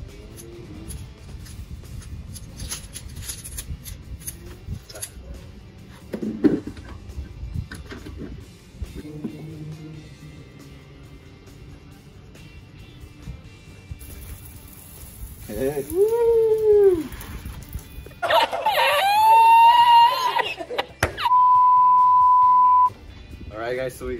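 Background music under light clicking and clatter of hose fittings being handled at an electric pressure washer. Past the middle come two loud voice-like sounds, then a steady single-pitch beep lasting about a second and a half.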